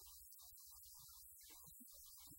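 Near silence: a faint low electrical hum that keeps cutting in and out, with no clear speech.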